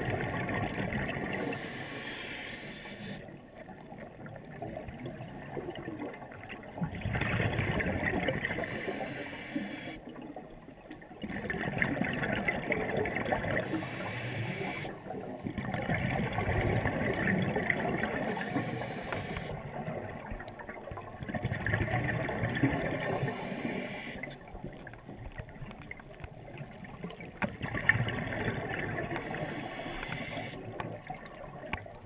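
Scuba diver breathing underwater through a regulator: spells of bubbling exhaust, each about two seconds long, come every four to six seconds, with quieter gaps between breaths.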